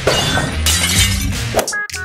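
Background music over a noisy, crash-like sound effect, with a few sharp hits in it.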